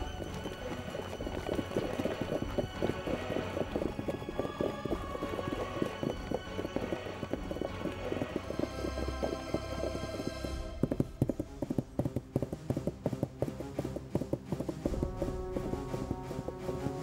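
Many horses' hoofbeats from a mounted column under dramatic soundtrack music. About two-thirds of the way through, the music thins and the hoofbeats come to the fore.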